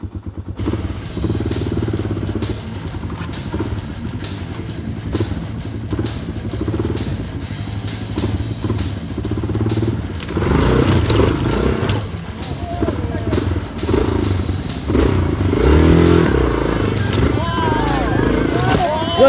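Off-road motorcycle engine revving in uneven surges, under electronic music with a steady beat. Raised voices join in about ten seconds in.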